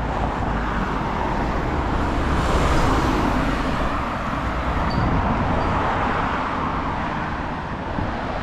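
Road traffic going past on a street: a steady rush of tyres and engines that swells as vehicles pass, loudest about three seconds in.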